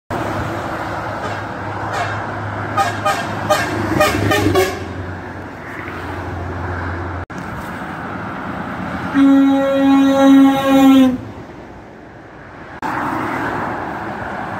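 Motorway traffic with a lorry engine humming, broken by a rapid string of short higher-pitched horn toots. About nine seconds in, a truck's air horn sounds three loud blasts over about two seconds.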